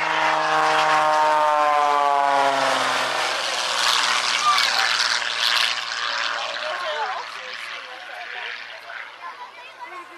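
Aerobatic propeller plane making a fast low pass: its engine and propeller note drops steadily in pitch over the first few seconds as it goes by. A loud rushing roar follows and fades toward the end.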